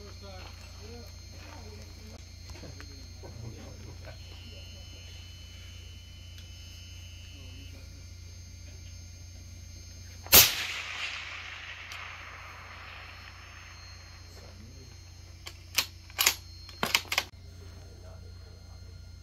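A single rifle shot about ten seconds in: one sharp crack followed by a couple of seconds of echo rolling away. Near the end come four quick, sharp clicks.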